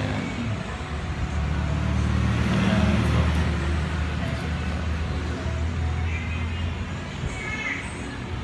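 Low engine hum of a passing motor vehicle. It builds to its loudest about three seconds in and fades out near the end.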